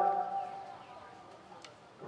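A man's commentary voice trailing off, then a low, quiet outdoor background with one faint brief chirp or click near the end.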